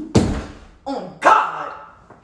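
Dog-style barking: a loud bark just after the start, then two more about a second later, the last one the longest.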